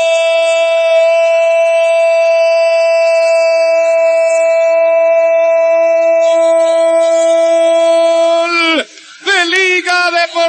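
A football commentator's drawn-out 'gol' cry, one loud held note kept at a steady pitch for nearly nine seconds, marking a goal just scored. Near the end the note drops in pitch and breaks off, and fast excited speech starts again.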